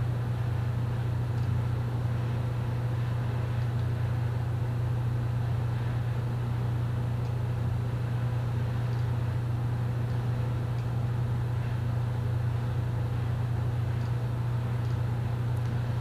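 Steady low mechanical hum that holds level and pitch without any change.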